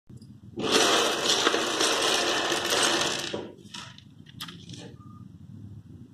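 Plastic building blocks clattering and rattling together in a loud, dense tumble for about three seconds, then a few lighter separate clicks.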